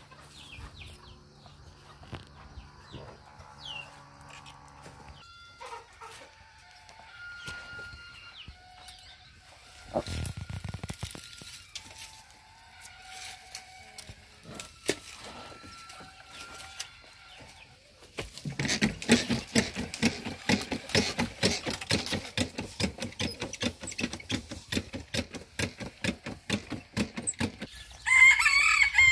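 Backpack sprayer spraying tick insecticide onto a calf's hair at close range, with chickens clucking faintly. About two-thirds of the way in, the sound becomes a louder, rapid, rhythmic pulsing that lasts to the end.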